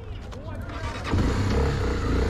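Police motorcycle's engine pulling away under throttle, its running sound swelling and getting louder about a second in.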